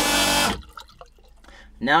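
Jabsco electric flush conversion's macerator pump running noisily on the empty setting, sucking the bowl out, then cutting off suddenly about half a second in. Faint water sounds in the bowl follow.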